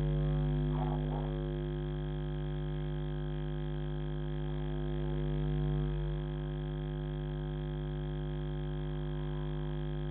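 Steady low electrical hum with a buzz of many overtones, typical of interference picked up by a security camera's microphone, dipping slightly about six seconds in. A faint voice is heard briefly about a second in.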